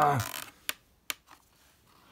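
A man's drawn-out 'Ah!' of effort ends, then two sharp clicks of the stiff clear plastic packaging tray as the sonic screwdriver toy is forced free, with a few fainter ticks after.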